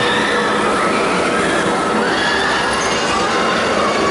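The Smiler, a Gerstlauer steel roller coaster, with a train running along its track: a steady, loud rush of wheel noise with faint tones that rise in steps.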